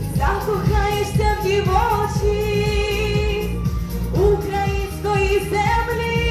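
A young woman singing solo into a microphone over instrumental accompaniment with a steady beat, holding long notes.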